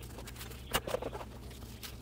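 Faint crackling and rustling of dry, brittle freeze-dried chicken being shredded by hand into a metal pot, with two sharper crackles, one just under a second in and one near the end.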